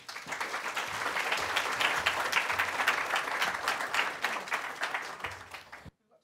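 Audience applauding: many hands clapping together, rising quickly, holding steady, then tailing off and stopping abruptly near the end.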